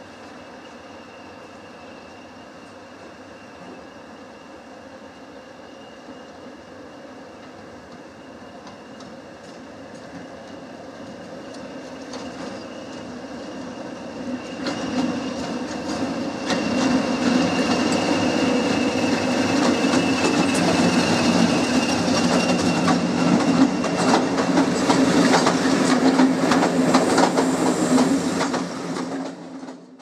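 First-generation diesel multiple unit passing close by. Its engines and wheels build from faint to loud as it approaches, then keep up a fast clatter of wheels over rail joints while the cars go past. The sound falls away sharply at the very end.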